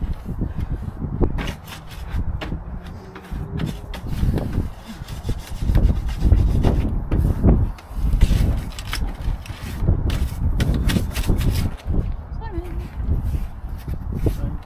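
Wind buffeting the microphone in gusts, with scattered knocks and rubbing from work on a wooden roof edge.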